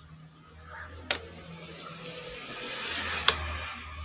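Two sharp computer mouse clicks about two seconds apart, over a low steady hum and a faint hiss that grows toward the end.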